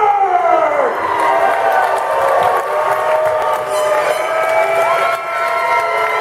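Crowd of wrestling fans yelling and cheering: many voices overlap, several falling in pitch at first and others drawn out and held.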